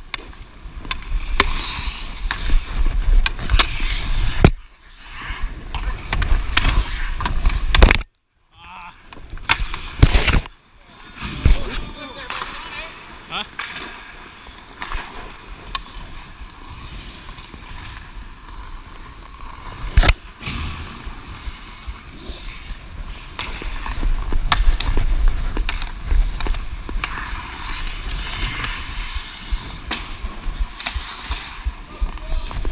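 Ice hockey skates carving and scraping across rink ice, with rushing wind noise on the player-worn camera's microphone that swells as the skater speeds up. A few sharp clacks of a hockey stick stand out, the loudest about 20 seconds in, and the sound cuts out briefly near 8 seconds.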